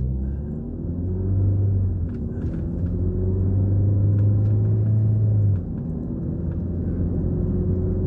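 Car engine and road noise inside the cabin as the car pulls away from a turn and accelerates, a low hum with a slowly rising engine note. The level drops suddenly a little past halfway, as at a gear change, and the car runs on with a steadier drone.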